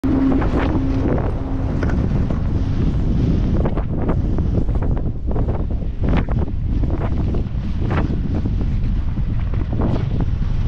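Wind buffeting the microphone of a camera on a skier moving down a groomed run, a steady heavy rumble. Skis swish and scrape on the snow now and then through the turns.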